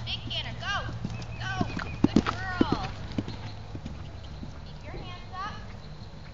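Hoofbeats of a ridden horse on grass, a run of heavy thuds loudest around two to three seconds in as the horse passes close.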